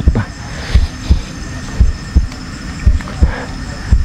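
A series of dull low thumps at uneven intervals, about two a second, with faint steady high-pitched chirring behind them.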